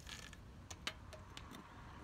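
Faint background noise with a low rumble and a few light clicks.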